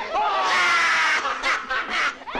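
A man laughing hard in one long bout of laughter.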